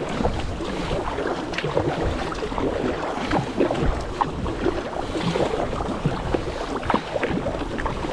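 Double-bladed kayak paddle strokes on alternate sides: the blades dip into the water, with irregular splashing and dripping off the blades and against the hull. A low rumble of wind on the microphone runs beneath.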